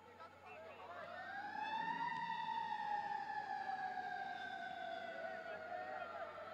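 A siren wailing: one long tone that rises for about a second, then falls slowly over the next few seconds.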